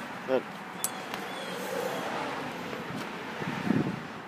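Steady outdoor background noise, with rustling and a few light clicks from a handheld phone being swung around. A louder rustle comes near the end. No engine is running.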